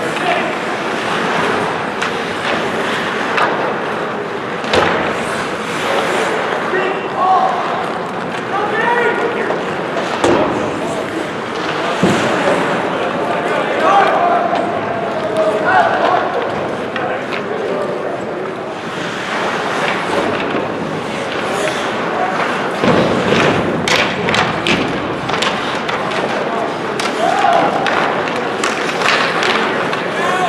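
Ice hockey play on a rink: skates scraping on the ice, with sticks and puck clacking and sharp thuds of the puck or players hitting the boards, among scattered shouts from players.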